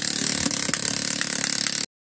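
The small electric gear motor of a pop-up zombie animatronic running steadily, with a couple of faint clicks about half a second in. The sound cuts off suddenly to silence just before the end.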